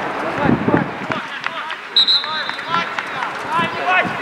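Voices calling and shouting on an outdoor football pitch, with a short high-pitched whistle about two seconds in.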